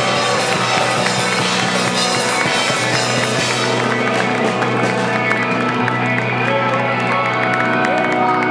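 Live rock band playing loudly with electric guitar and drums, the crowd cheering, and from about four seconds in many hands clapping along.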